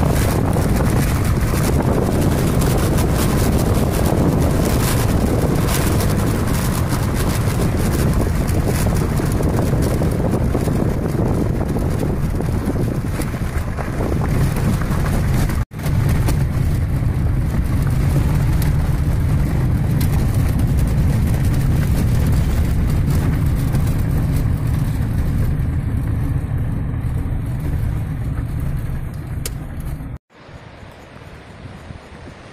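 Car driving on a gravel dirt road, heard from inside the cabin: steady engine and tyre rumble with wind noise, broken by a sudden brief cut about halfway through.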